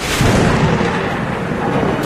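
Online slot game's thunder sound effect: a sudden crash at the start that rumbles on through the rest, played as the 15-free-spins award comes up.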